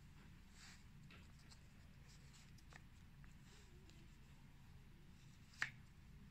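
Near silence, with faint rustling of a hand sliding the cardboard tab of a board book and one short sharp click near the end.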